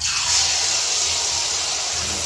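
Neyyappam batter poured from a ladle into hot oil in an aluminium kadai, sizzling loudly the instant it hits the oil, then frying with a steady hiss.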